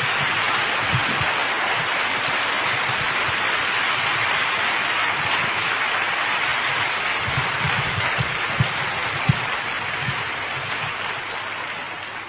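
A large audience applauding steadily, the clapping dying away gradually near the end.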